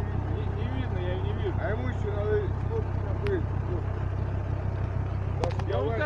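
An off-road 4x4's engine idling steadily as a low, even rumble, with indistinct voices talking over it and a couple of sharp clicks near the end.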